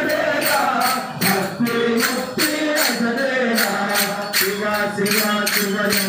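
Shiva bhajan: singing of a devotional chant, kept in time by jingling hand percussion struck about twice a second.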